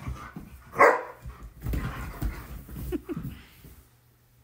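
German shepherds at rough play: one sharp bark about a second in, then scuffling play noise and two short rising whines near the end.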